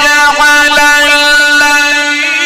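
A male Quran reciter's voice holding one long, steady note in melodic (mujawwad) recitation, the drawn-out elongation of a syllable.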